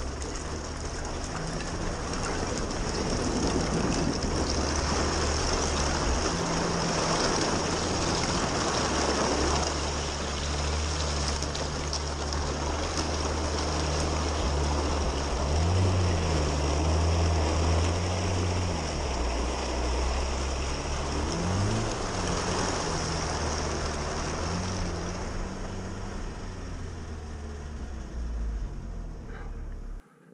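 Chevrolet Niva engine pulling under load through a deep flooded puddle on a forest track, over a steady rushing and splashing of water against the body. About halfway through, the engine pitch rises and falls several times as it works through the deepest water.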